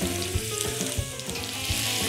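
Diced vegetables (courgette, red and green peppers, onion) sizzling steadily in hot oil in a pan as they begin to soften, with occasional small crackles.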